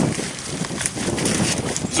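Grapevine leaves and canes rustling as hands push into the vine and grip a woody cane, a dense run of small irregular crackles.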